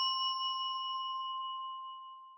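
Ringing tail of a single struck bell chime: one clear tone with a few higher overtones, fading slowly, the higher overtones dying away first.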